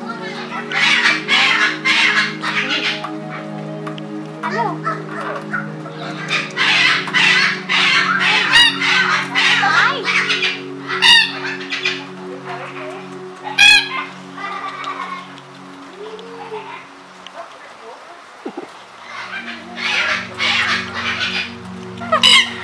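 A red-tailed black cockatoo calling repeatedly, its loudest calls coming about eleven and fourteen seconds in, over steady background music.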